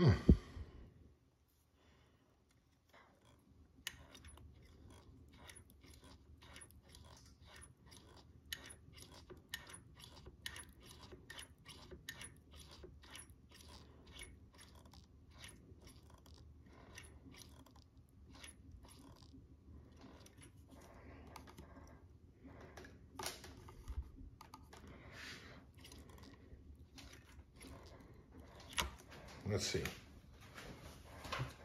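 A knock right at the start, then a long run of faint, fairly regular clicks, about two a second, thinning out to a few scattered louder clicks near the end. The clicks come from a motorcycle front brake lever being pumped to push trapped air up out of the master cylinder, with air bubbles rising in the open reservoir.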